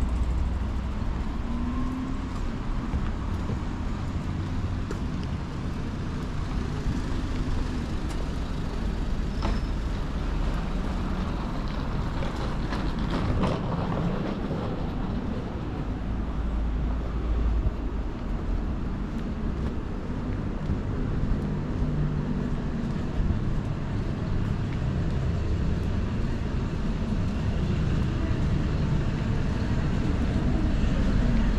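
Steady city street traffic noise with vehicles passing, a constant low rumble with a brief clattering burst about halfway through.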